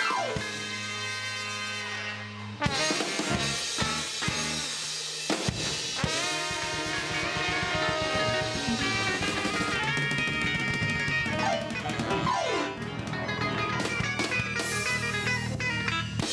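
Live ska band playing an instrumental passage: drum kit, electric bass and guitar, a horn section of trumpet, trombone and saxophones, and keyboard, with a few falling pitch slides.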